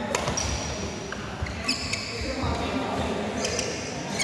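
Badminton doubles rally in a large hall: sharp racket-on-shuttlecock hits, the first an overhead smash just after the start, with high squeaks of court shoes and footfalls on the court mat between shots.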